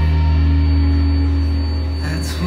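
Live rock band holding one sustained chord on electric guitar and bass, ringing steadily and fading slightly.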